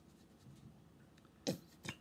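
Quiet handling of a hair-conditioner bottle and plastic measuring cup as conditioner is squeezed out, with one sharp click about one and a half seconds in and a lighter one just before the end.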